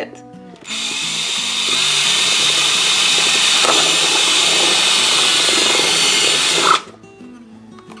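Cordless drill running steadily for about six seconds as its bit bores through the thin wall of a clear plastic food-storage container, driven with light pressure so the plastic does not crack. It starts about a second in and cuts off sharply near the end.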